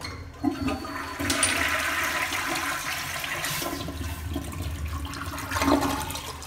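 Foot-pedal flushometer on an American Standard compact toilet flushing. A short sharp sound comes about half a second in. From about a second in, a loud steady rush of water swirls through the bowl, with a last surge near the end as the bowl empties.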